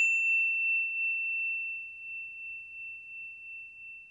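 Ring of a struck service bell dying away: one clear high tone fading slowly and evenly, with fainter higher overtones gone within the first second.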